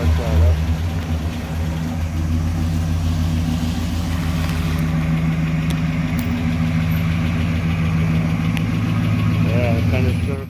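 1959 Plymouth Sport Fury's 318 V8 running steadily at idle as the car creeps forward out of the garage, freshly rebuilt with new mufflers.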